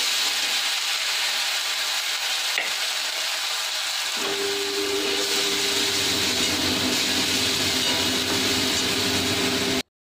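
Spice masala sizzling as it fries in hot oil in a steel kadai, stirred with a metal spatula; the frying makes a steady hiss. About four seconds in, a steady low hum joins it, and everything cuts off abruptly just before the end.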